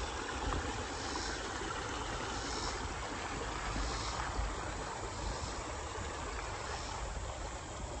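Steady rushing noise of a creek running over gravel, with a low fluttering rumble underneath.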